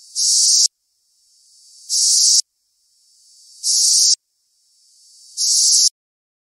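A reversed sound-effect sample: a high, hissing sound fades in, jumps loud for about half a second and cuts off abruptly. It repeats four times, about every second and a half to two seconds.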